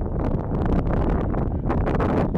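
Wind buffeting a handheld camera's microphone: a loud, uneven rumble with rough, crackly gusts.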